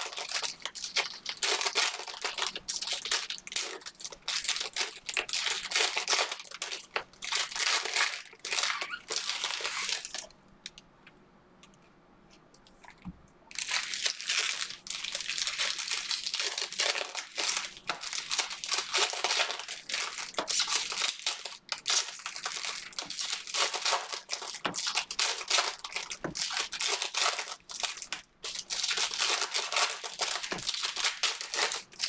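Foil wrappers of Panini Prizm Fast Break basketball card packs crinkling in the hands as the packs are opened, a dense crackle that stops for about three seconds a third of the way through.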